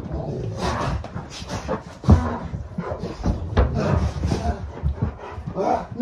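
Several Rottweilers play-wrestling with a man on a carpeted floor: scuffling and dog noises mixed with the man's grunts, with a few thumps, the loudest about two seconds in.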